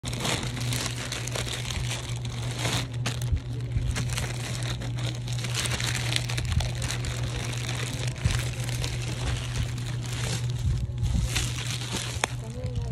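Thin plastic shipping bag crinkling and rustling continuously as it is gripped and pulled open by hand, full of sharp irregular crackles.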